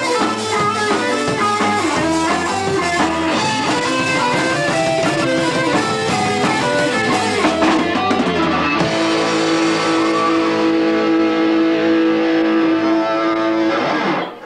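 Amateur heavy metal band playing live on guitars, bass and drums: a busy passage with drums, then a single chord held ringing for about five seconds that stops abruptly at the end of the song.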